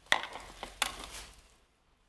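Gloved hands squishing and rubbing wet, lathered hair at a wash basin, working a bleach wash into the hair with water to emulsify it: a few short wet squishes that die away after about a second and a half.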